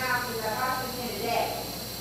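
A woman speaking, her voice carried through a hall's microphone.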